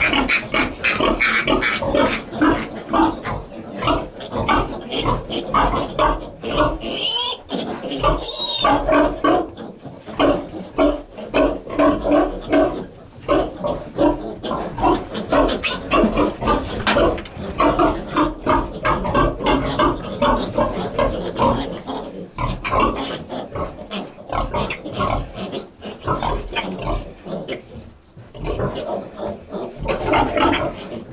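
Pietrain piglets squealing and grunting in rapid, dense calls as they are caught and held for iron injections. Shriller squeals come about seven to eight and a half seconds in and again briefly near the end, squeaky like rubber ducks.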